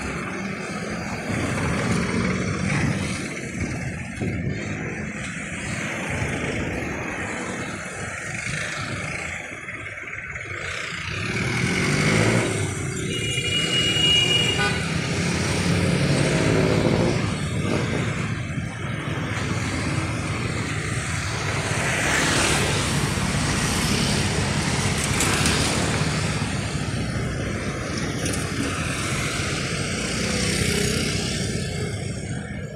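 Road traffic: the steady rumble of cars and motorcycles driving past, swelling and fading as vehicles go by, with a brief vehicle horn toot about halfway through.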